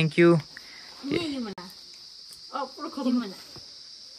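A steady, high-pitched insect chorus, like crickets, with a few short snatches of speech over it.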